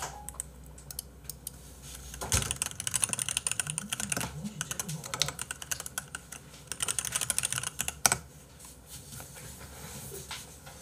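Computer keyboard typing: a fast run of key clicks starting about two seconds in and lasting about six seconds, ending with one sharper, louder click.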